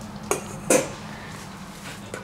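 A dog's food bowl clanks twice as the dog noses into its dinner.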